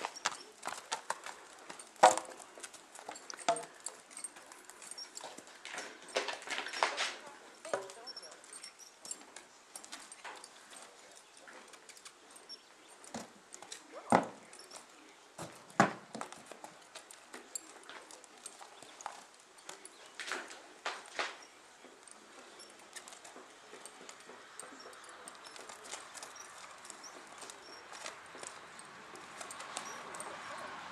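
Horse's hooves walking on sandy arena ground, with scattered clicks and a few sharp, hollow knocks as the hooves strike wooden ground poles and step onto a wooden platform. The two loudest knocks come a little past the middle, under two seconds apart.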